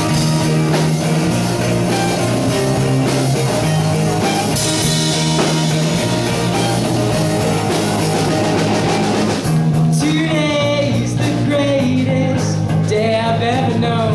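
A live rock band playing amplified: two electric guitars, electric bass and a Yamaha drum kit. About two thirds of the way through, a young male voice starts singing over the band.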